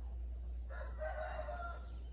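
A faint pitched call, about a second long, starting under a second in, over a steady low hum.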